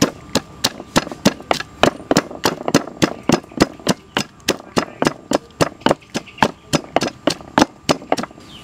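Pestle pounding fresh chilies and garlic in a mortar, a steady rhythm of strokes at about three and a half a second.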